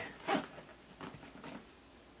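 Faint clicks and rustles of a small carabiner being clipped through the zipper pulls of a canvas backpack, with a brief louder sound about a third of a second in.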